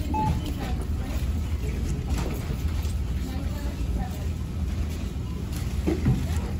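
Busy supermarket ambience at the checkout line: a steady low rumble of the store with faint, indistinct chatter of shoppers.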